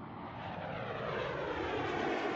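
A whoosh that swells steadily louder, the lead-in of the sound effect for an end logo.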